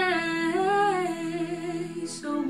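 A young woman singing a long, sustained note with vibrato into a handheld microphone. The pitch swells upward and falls back once midway, then holds.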